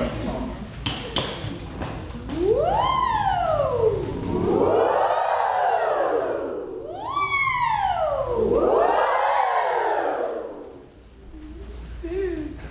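Vocal warm-up siren in call and answer: a single voice slides up in pitch and back down, then a group of voices answers with the same rising and falling slide. The exchange happens twice.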